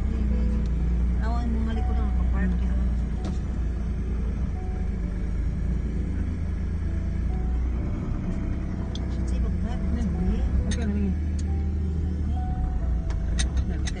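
Steady low rumble of a car's engine and road noise heard from inside the cabin while the car moves slowly, with faint voices in the background.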